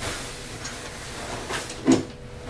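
Rustling and handling of coats and fabric being lifted off a wall coat hook, a fairly quiet, even rustle, with a brief louder sound near the end.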